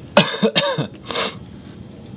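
A man coughing: a harsh cough shortly after the start, then a shorter second cough about a second in.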